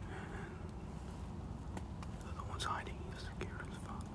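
A person whispering softly over a steady low rumble, with a few light clicks.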